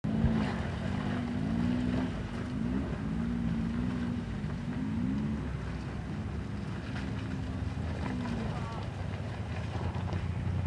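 Suzuki Jimny JA11's small three-cylinder turbo engine, revved up and down repeatedly as the 4x4 works slowly through mud, then held at steadier revs for a few seconds.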